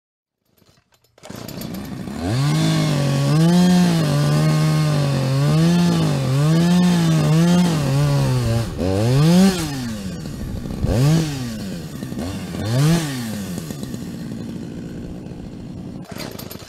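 Chainsaw engine starting about a second in and running with a wobbling pitch, then revved three times, each rev rising and falling back.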